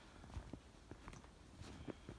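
Faint footsteps in deep snow: a few soft crunching steps of a hiker's boots.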